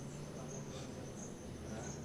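Insects chirping in short high-pitched pulses, about two a second, over a low steady hum.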